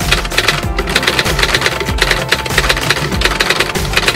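Rapid typewriter keystroke clicks, a typing sound effect, over background music.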